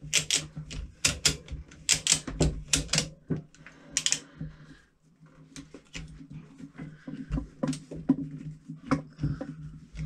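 A tie-down strap being tightened overhead to pull a bicycle's front fork down and compress the suspension: short runs of sharp clicks and rattles, over a low steady hum.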